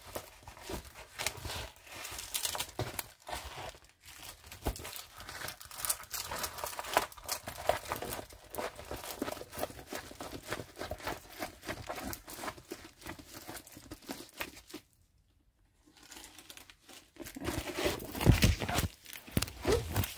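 Plastic-covered diamond-painting canvas crinkling as it is handled and rolled over, with a brief silent pause about fifteen seconds in. A few heavier knocks near the end as the phone mount holding the camera is bumped.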